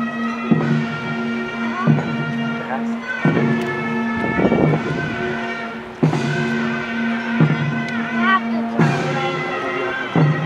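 Korean traditional court military music for the guard ceremony: a reedy, wavering melody over a steady held drone, with a drum or gong stroke about every second and a half.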